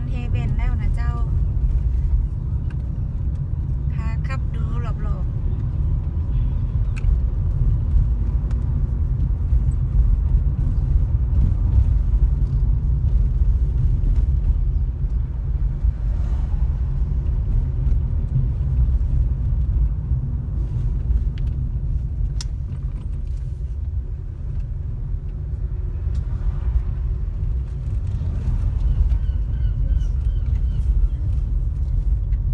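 Inside a moving car: the steady low rumble of the engine and tyres on the road while driving slowly.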